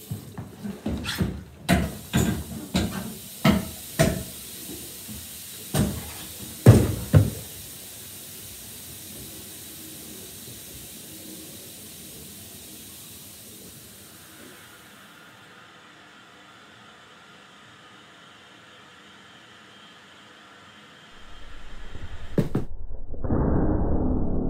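About a dozen hard, irregular bangs in a tiled room over the first seven seconds, the loudest pair a little past the middle of the run. Then a steady hiss, and near the end a single sharp click followed by a loud low rumbling swell.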